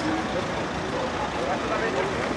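Steady city street traffic noise with faint, indistinct voices of people talking.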